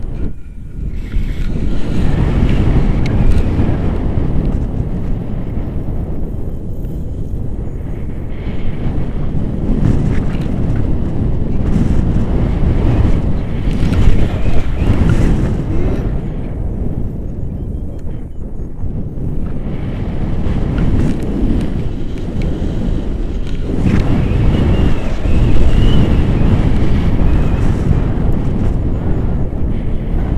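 Airflow buffeting the camera microphone during a paragliding flight: a loud low rumble that swells and eases in gusts throughout.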